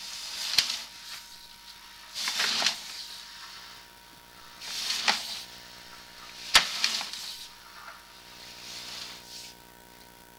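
Sewer inspection camera's push cable being fed into the drain line by hand in strokes: a rustling scrape about every two seconds, some strokes with a sharp click, as the camera advances down the pipe.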